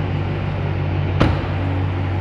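A 2021 Dodge Charger Scat Pack's 6.4-litre 392 Hemi V8 idling steadily. About a second in, a single sharp thud: the driver's door being shut.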